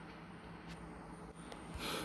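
Faint room noise with a low steady hum, one small click about a third of the way in, and a man drawing a breath near the end before speaking again.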